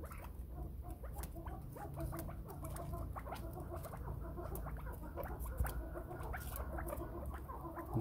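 Chukar partridge moving about in a bamboo cage: many small irregular clicks and scratches, with a few faint, soft low notes.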